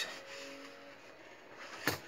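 Paper mailer being handled and opened, a faint rustle, with one sharp click or snap just before the end.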